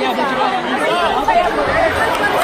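Crowd of basketball spectators in a gym, many voices talking and calling out at once in a steady, dense chatter.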